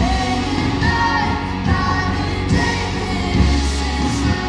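Live worship band playing a contemporary worship song: a woman sings lead with held, gliding notes over electric guitars, bass and drums.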